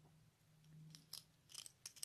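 Near silence: room tone, with a faint low hum and a few faint, short clicks in the second half.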